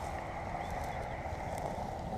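Low, steady outdoor background rumble with a few faint ticks, and no distinct event.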